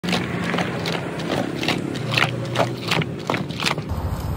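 Hands knocking and slapping on the round wooden lid of a burlap-wrapped clay matka, a quick uneven run of sharp wooden knocks of about three a second, with a faint steady low hum behind.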